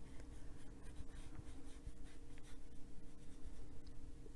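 Faint, irregular brushing of a watercolor brush stroking across textured paper, over a faint steady hum.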